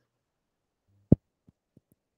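Near silence broken by one short, sharp low thump a little past a second in, followed by three much fainter soft knocks.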